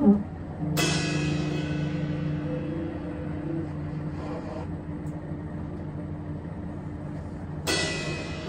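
Free-improvised music for drums, guitar and tenor sax. A Paiste cymbal crashes about a second in and rings down slowly over steady low held notes, and a second cymbal crash comes near the end.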